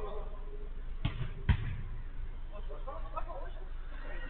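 Two thumps of a football being struck during play on an artificial-turf pitch, about half a second apart, the second louder.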